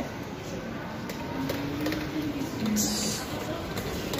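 Shopping-mall background hubbub with faint distant voices, and a short hiss about three seconds in.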